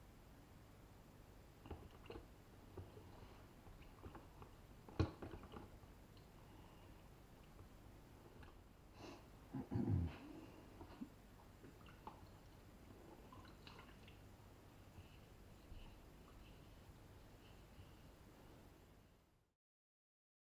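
Shotgun parts being wiped and handled at a workbench with a degreaser-soaked rag: faint wet wiping and scattered small metal clicks, a sharp click about five seconds in, and a dull knock around ten seconds in that is the loudest sound.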